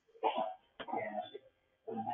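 A person coughing and clearing their throat in two short bursts, thin and cut off in the highs as over a telephone line into a video conference.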